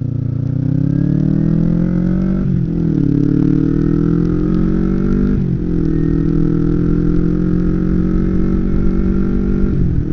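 Kawasaki Ninja 250R's parallel-twin engine pulling away, heard from a helmet-mounted camera. Its pitch rises and drops sharply at two upshifts, about two and a half and five and a half seconds in, then holds nearly steady at cruise.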